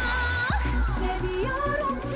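Female pop singer holding a long note with vibrato that breaks off about half a second in, then starting a new phrase over a dance-pop backing with a pulsing bass beat.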